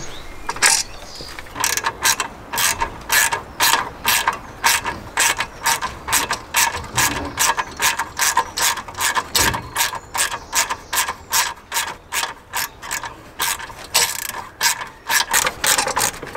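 Hand ratchet clicking as a bolt on an ECU holder bracket is turned by hand, a steady run of sharp clicks at about three a second.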